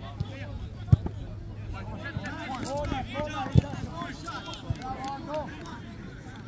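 Players' voices calling out across a soccer field, with sharp thumps of a soccer ball being kicked, about a second in and again in the middle, the second the loudest.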